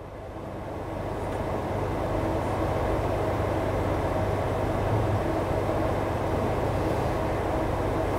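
Steady outdoor rumbling noise that fades up over the first two seconds and then holds even, with a faint steady hum through it.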